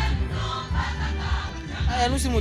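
A choir singing over music with a heavy, steady bass.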